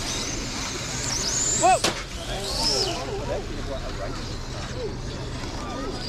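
Electric RC racing cars' motors whining, their high pitch rising and falling as the cars accelerate and slow around the track. Voices are scattered underneath, with one brief louder sound just before two seconds in.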